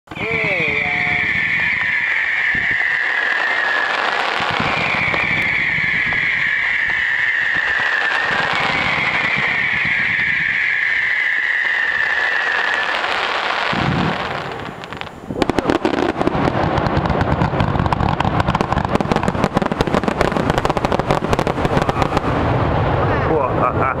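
Fireworks going off: three long whistles, each a few seconds long and falling slightly in pitch, follow one after another. After a short lull about fifteen seconds in, a dense run of rapid crackling pops takes over, and a laugh comes at the very end.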